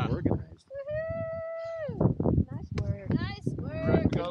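A person's long held cheering call, about a second long, steady in pitch and then falling away at the end, followed by short shouts.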